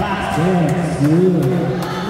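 A man's voice with long, drawn-out tones rising and falling in pitch, over a few short sharp clicks.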